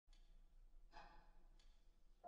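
Near silence with a faint intake of breath about a second in: a player's cue breath just before a piano trio starts to play.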